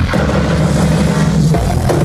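Loud progressive house music at a DJ set: the kick drum drops out and a sustained low synth note holds for about a second and a half, then the beat comes back in near the end.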